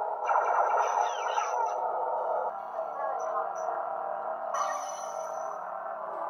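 Electronic lightsaber hum from a double-bladed ArtSaber prop's built-in speaker: a steady, buzzing drone. Brighter effect sounds come in about half a second in and again near five seconds, as the saber switches its blade colour preset.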